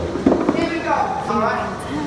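Voices talking and calling out in a gym, with a single thump about a quarter of a second in.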